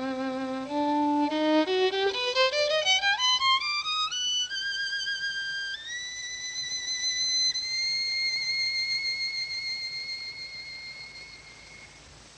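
Solo violin playing a low held note, then a quick climbing run up to a very high note held with vibrato that slowly fades away near the end.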